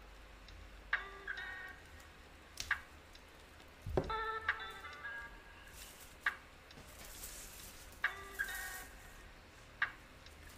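Crafting at a table with artificial flowers and a hot glue gun: a few sharp clicks, a thump about four seconds in, short squeaky chirps from time to time, and a rustle later on.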